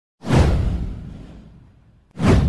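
A whoosh sound effect for an animated title intro, starting a moment in: a sudden rush that sweeps down in pitch, with heavy bass, and fades out over about a second and a half.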